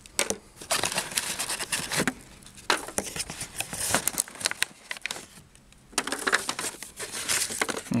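Folded paper and thin card boxes rustling, crinkling and knocking together as a hand rummages among them in a cardboard box and lifts one out. The sound comes in irregular bursts, with a quieter stretch a little after five seconds.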